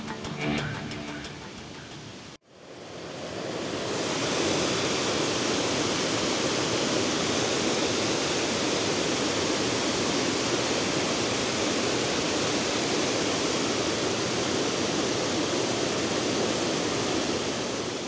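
Steady rushing of a waterfall running high after heavy rain. It fades in about three seconds in, after background music dies away, and then holds even until it fades near the end.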